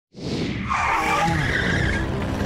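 Sound effect of an animated channel intro: it starts suddenly with a short hiss, then a wavering high-pitched tone rides over a low rumble.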